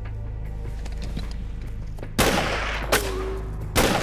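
Two loud rifle shots about a second and a half apart, each with a long echoing tail, and a sharper crack between them, over a low, steady music score.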